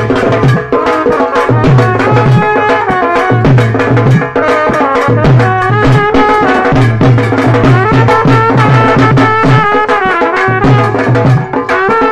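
Loud dance music with fast, steady drumming and a melody line above it.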